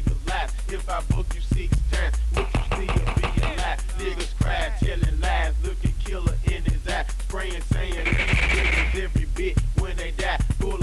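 Memphis rap track from a 1997 cassette tape: a hip hop beat with heavy bass and drums under rapped vocals.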